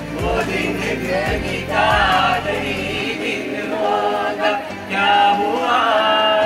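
Several voices singing a song together into a microphone. For about the first half a low beat runs underneath; after that the voices carry on with longer held notes.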